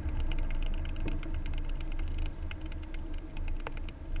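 Car driving slowly, heard from inside the cabin: a steady low engine and tyre rumble with many irregular light clicks and rattles over it.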